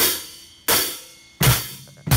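Drum kit struck three times, evenly spaced about two-thirds of a second apart, each hit a cymbal crash with a long ringing decay; the last hit has a low drum beneath it.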